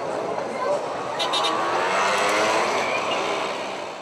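Street-market crowd chatter, many voices at once, with a car driving past close by. Its engine note swells to a peak around the middle and then fades.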